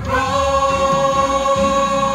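Small church choir singing a hymn, holding one long note on the word "cross".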